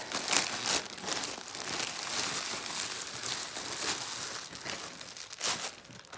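Plastic mailer bag and the clear plastic bag inside it crinkling and rustling as they are handled, a continuous run of small crackles with a few louder crunches about half a second in and near the end.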